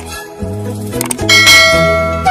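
Background music with an overlaid subscribe-button sound effect: short clicks, then a bright bell ding about 1.3 seconds in that rings on and fades.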